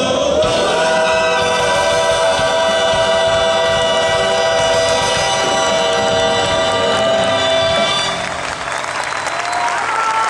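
Live band with several voices holding a long final chord, which stops about eight seconds in; crowd applause follows.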